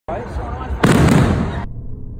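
People's voices, then a loud aerial firework shell bursting about a second in. The sound cuts off suddenly into a dull, low rumble as the slow-motion recording slows the audio.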